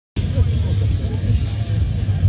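Open-air festival crowd ambience: scattered distant voices over a heavy, continuous low rumble.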